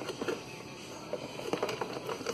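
Light rustling and small plastic clicks as the plastic plug on a ride-on toy's battery wiring is handled and pushed together in its battery compartment, with a few sharper ticks near the end.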